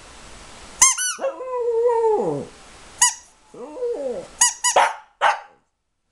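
Small shaggy dog 'singing': high short squealing yips, each followed by a drawn-out howl that slides down in pitch at its end, twice over, then a quick run of yips and two short rough barks before the sound cuts off suddenly.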